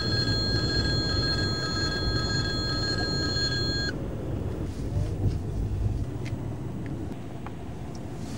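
Road rumble of a moving car heard from inside, with a steady high-pitched squeal that lasts about four seconds and then cuts off suddenly.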